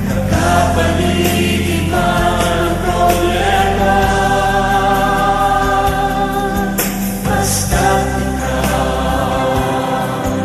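Tagalog Christian worship song: sung vocals over steady instrumental accompaniment, in long held phrases with brief breaks between lines.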